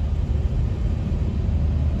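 Steady low rumble of a car driving on a wet road, heard from inside the cabin.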